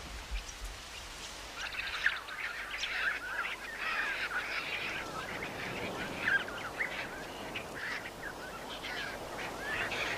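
A flock of birds calling, many short overlapping calls starting about a second and a half in.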